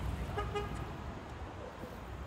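City traffic ambience with a low, steady rumble, and one short car-horn toot about half a second in.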